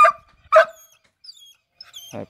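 A dog barking twice, two short loud barks about half a second apart, excited as it is egged on to hunt.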